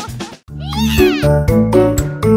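A brief break in the music, then a single meow-like call about half a second in, rising and falling in pitch. An upbeat children's song with a steady beat starts right after it.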